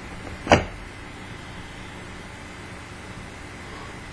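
A single short, sharp click about half a second in, then only steady low background noise while a cigarette-style e-cigarette is drawn on without an audible puff.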